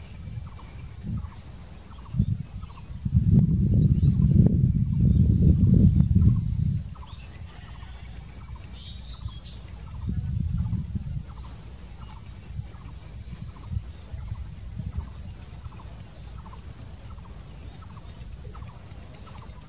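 Birds calling with short repeated chirps, broken by bursts of low rumbling, the loudest from about three to seven seconds in.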